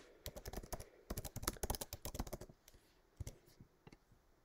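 Computer keyboard typing: a quick run of keystrokes lasting about two seconds, then a few separate clicks near the end.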